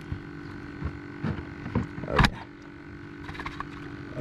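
Knocks and rattles from a plastic fish-measuring tube being handled on a cooler lid as a crappie is slid out; the loudest is a single sharp knock about two seconds in. Under it runs a steady small electric-motor hum.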